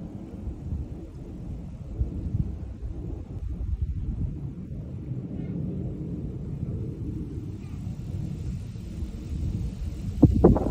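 A steady low rumble of outdoor background noise, with a few faint knocks.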